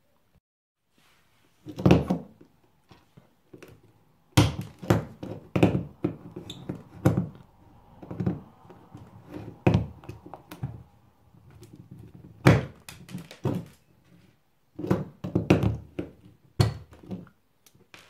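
Diagonal side cutters snipping through the rivets that hold a cheap 300 A DC circuit breaker's plastic case together, with the breaker handled between cuts. About a dozen sharp snaps and knocks come at irregular intervals, the first one about two seconds in.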